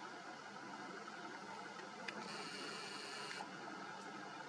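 Faint steady hiss, broken about two seconds in by a click and then a camera's zoom motor whirring for about a second before it stops abruptly.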